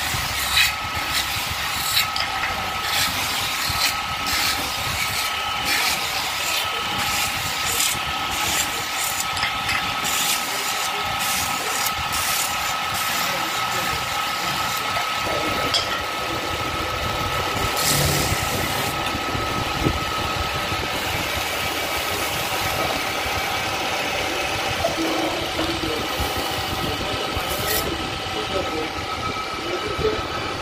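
Metal-spinning lathe running while a hand-held tool is pressed against a spinning aluminium disc, forming it over a mandrel into a bowl: a steady whine with frequent scraping and clicking from the tool on the metal. The whine fades about three quarters of the way through.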